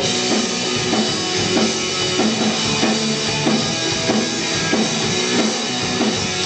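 Live rock band playing: a drum kit keeps a steady beat under electric bass and guitar.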